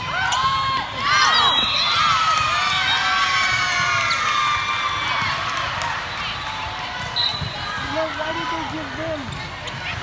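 Youth volleyball players' high voices shouting and cheering in a large, echoing gym. A burst of overlapping calls comes about a second in and carries on for a few seconds, over the thuds of balls bouncing on the hardwood court.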